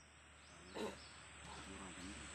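A single short animal call about a second in, then faint outdoor background sound with a few weaker calls.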